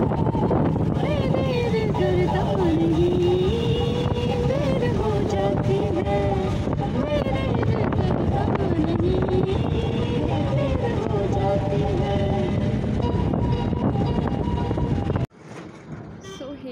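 An old song with a singer's voice playing over a bus's speakers, under the loud steady rumble of the bus's engine and tyres on the road inside the moving bus. It all cuts off suddenly near the end.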